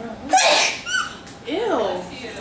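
A person's voice: a sudden loud burst of breathy noise about a third of a second in, then short vocal sounds with rising and falling pitch near the end.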